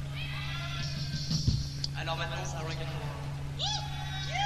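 A live rock band's stage performance: pitched sounds swoop up and down in short arcs over a steady low hum.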